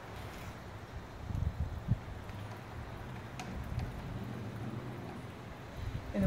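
Small tabletop etching press being hand-cranked, its bed rolling under the steel roller to print a monotype: a low steady rumble, with a few knocks about one and a half to two seconds in.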